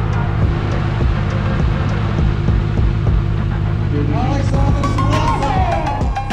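Drift cars' engines idling together at the start line, a loud, rough low rumble that pulses unevenly. A voice comes in over it near the end.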